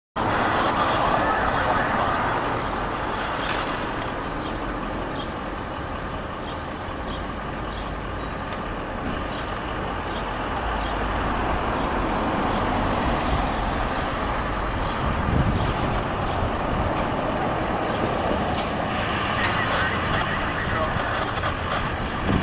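Steady road traffic and idling vehicle noise, swelling and fading gently as vehicles pass, with no siren yet.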